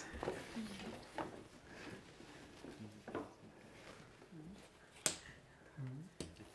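Faint murmur of a few people talking quietly in a small room, with one sharp click about five seconds in.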